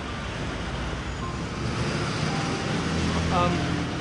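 Steady road traffic noise, a continuous rumble of passing cars and buses that swells a little after the middle.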